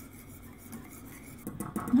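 Wire whisk stirring a hot chocolate milk mixture in a stainless steel saucepan, scraping steadily against the pan, with a few light clinks near the end.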